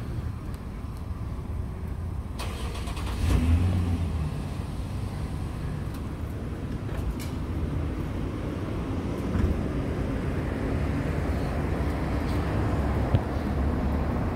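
A car engine running with a low steady rumble that swells briefly about three seconds in.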